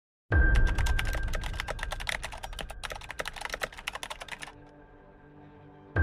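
Computer keyboard typing, rapid irregular key clicks, over a low music drone. The typing stops about four and a half seconds in, leaving only the faint drone.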